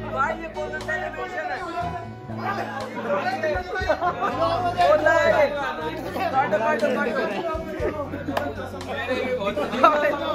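Music with a steady bass line, with several men talking and calling out over it at once.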